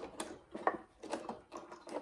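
A few small clicks and knocks as the paper vane wheel of a sand-toy automaton is worked loose from its axle inside the cardboard case.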